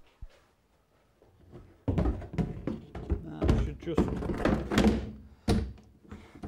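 Kit-car boot box being handled and set into place on the car's rear, making a run of hollow thunks and knocks from about two seconds in, with one sharp knock near the end.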